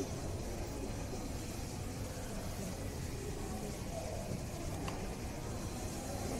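Steady low background rumble, with faint distant voices about four seconds in and a single small click shortly after.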